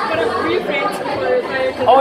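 Voices talking in a busy indoor room: overlapping conversational chatter.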